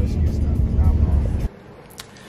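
Low, uneven rumble of a car on the move, stopping suddenly about one and a half seconds in.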